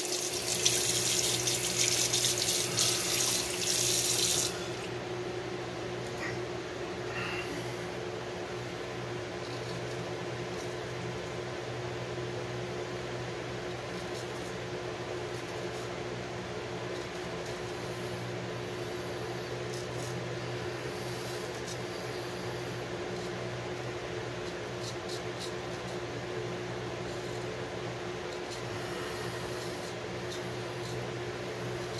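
A sink tap runs for about four seconds, water rushing, then shuts off abruptly. After that an electric fan hums steadily with a constant tone, and faint, brief scrapes of a safety razor come through during the last third.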